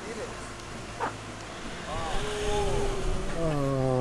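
A man's drawn-out groan of pain after a bike crash, held and then sliding down in pitch near the end, without words; a short sharp knock about a second in.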